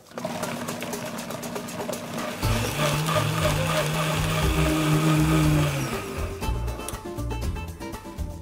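Countertop blender running, puréeing raw tomatillos, cilantro, lime juice and salt into a slushy green sauce; it grows louder about two and a half seconds in and stops about six seconds in.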